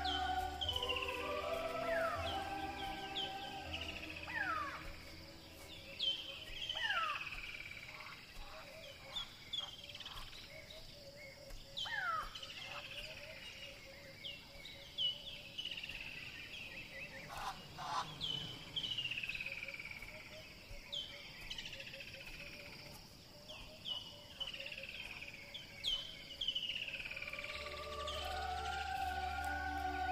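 Birds calling in the wild: a run of short whistled calls, each sliding down in pitch, repeated every second or so, over a faint rapid pulsing trill. Soft music plays at the start, fades within the first few seconds and comes back near the end.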